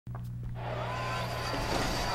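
Intro sound effect for an animated title graphic: a steady low drone with a whooshing swell that builds from about half a second in and grows slowly louder.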